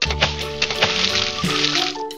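A crackling hiss sound effect, starting abruptly and fading out near the end, laid over children's background music with a steady bass.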